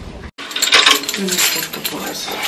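Light metallic clinking and jingling, many small sharp clicks in quick succession, starting just after a sudden cut, with a few faint words underneath.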